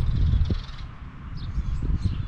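Wind rumbling on the microphone, strongest in the first half-second, with small birds chirping in short high calls in the background.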